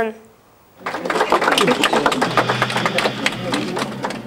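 A moment of near silence, then voices with a dense, irregular clatter of sharp clicks.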